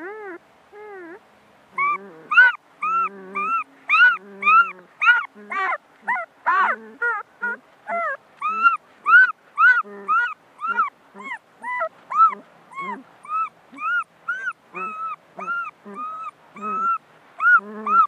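Puppy whimpering and yelping in a long run of short, high cries, each rising and falling in pitch, about two or three a second.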